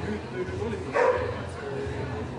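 A golden retriever barks once, a short, loud bark about a second in.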